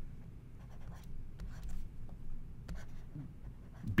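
Pen stylus scratching faintly on a drawing tablet as a letter is hand-written, with a few light scattered ticks.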